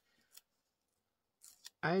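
A few short, faint crisp ticks of paper as a softcover colouring book's pages are handled and pressed open: one pair near the start and a couple more just before a woman's voice starts near the end.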